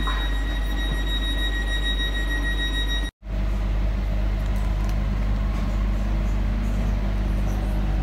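Steady low rumble and hum of a passenger train carriage's interior, with a thin high steady whine over it for the first three seconds. The sound drops out for an instant about three seconds in, then the rumble and hum carry on.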